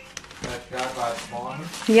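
Indistinct talking that the recogniser did not write down. No other sound stands out above it.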